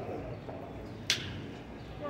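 City sidewalk ambience, a steady murmur of street noise, with a single sharp click about halfway through.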